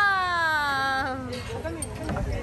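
A young child's drawn-out crying wail, one long call that slowly falls in pitch and fades out well before the end.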